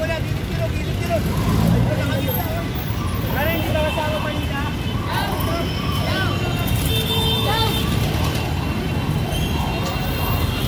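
Busy street ambience: scattered voices of people talking nearby over a steady rumble of passing road traffic.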